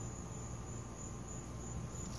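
A steady, high-pitched chorus of insects such as crickets, with a faint low hum beneath it.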